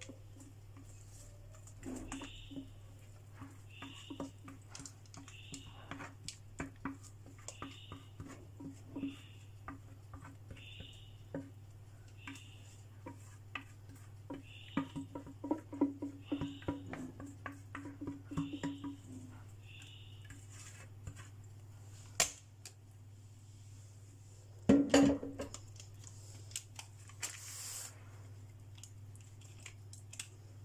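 Thick cake batter is poured and scraped out of a plastic bowl into a parchment-lined metal pan, with many small clicks and taps from the utensil and one louder knock about 25 seconds in. A faint high sound repeats a little faster than once a second through the first two thirds, over a steady low hum.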